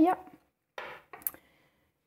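A metal fork set down on the kitchen worktop: a brief soft rustle, then a couple of sharp light clinks with a faint ring after them.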